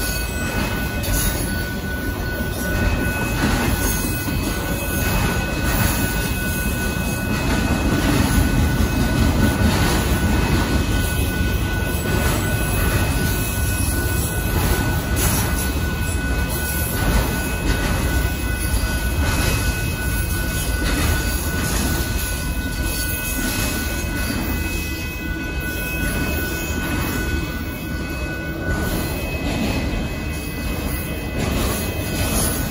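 Freight train of autorack cars rolling steadily past at a grade crossing: a continuous rumble and rattle of steel wheels on the rails, with a thin, steady high-pitched squeal from the wheels that fades out near the end.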